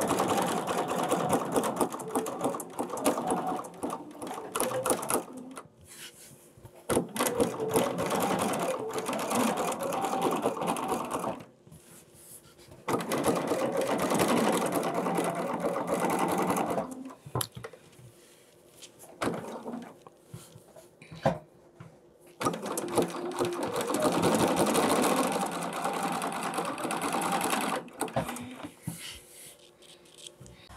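Bernina 740 sewing machine stitching during free-motion thread painting. It runs in four spells of about four to five seconds each, stopping for quieter pauses between them.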